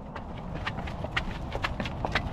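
Footsteps on asphalt, a quick run of sharp steps about three to four a second, over a low steady rumble.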